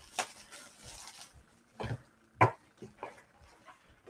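Quiet rustling and crinkling of a comic book pack's plastic wrapping being handled and opened, with a few brief sharp sounds around the middle.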